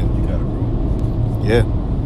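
Steady low rumble, with one short spoken syllable about three quarters of the way through.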